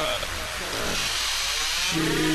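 Electronic dance music from a live DJ set: a buzzing, distorted synth sound that sweeps in pitch, with a processed vocal-like sound over it.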